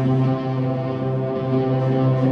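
Electric guitar played through effects pedals, holding one sustained low droning note rich in overtones.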